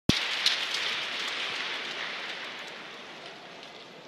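Audience applause in an ice arena, fading steadily and dying away.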